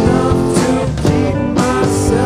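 Indie rock band playing live: strummed electric guitars, bass guitar and a drum kit keeping a steady beat.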